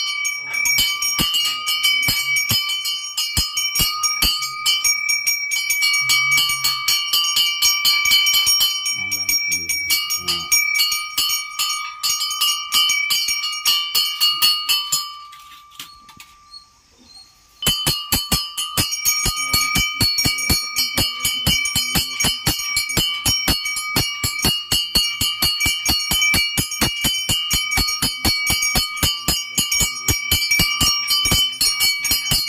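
Puja hand bell rung rapidly and steadily, its clear ringing tone held over the fast strokes. The ringing breaks off for about two seconds around the middle, then resumes.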